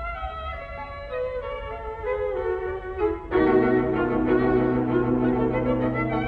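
A string quartet playing: a quiet line of notes steps downward over the first three seconds, then about three seconds in the full ensemble comes in louder on a held chord over a low cello note.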